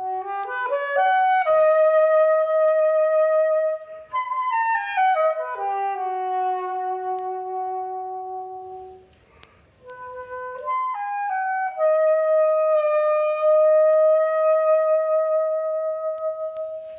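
Soprano saxophone playing an unaccompanied classical line: a quick rising run into a long held note, a falling run down to a low held note, a short pause about nine seconds in, then another rising run into a long held note.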